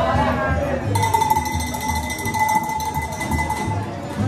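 A steady high tone starts sharply about a second in and holds for nearly three seconds, over background music with a steady bass beat.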